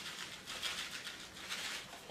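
Faint, light pattering and rustling of shredded coconut being sprinkled by hand onto a pie's soft filling.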